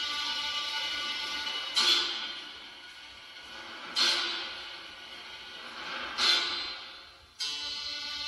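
Music playing through a small speaker in the light-controller box, with three loud accented hits about two seconds apart, each fading away, and a change in the music near the end.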